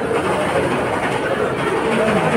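Steady crowd din in a busy indoor shopping mall, many indistinct voices blending into a continuous murmur.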